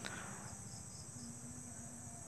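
Faint, steady, high-pitched trill of insects, with a light handling click at the very start.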